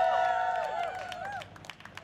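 Crowd cheering and whooping, with hand clapping. The voices die away about a second and a half in, leaving scattered claps.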